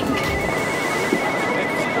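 Mobile phone ringing with a single high, rapidly pulsing electronic tone, over background music.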